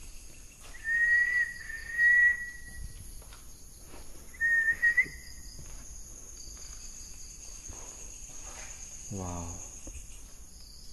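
Someone whistling two long, nearly level notes with slight wavers, one starting about a second in and a shorter one near the middle. A steady chorus of crickets runs underneath. A brief low vocal sound comes near the end.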